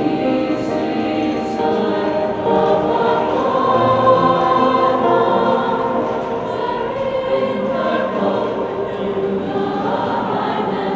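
Mixed choir of boys and girls singing sustained chords in several parts, growing a little louder in the middle.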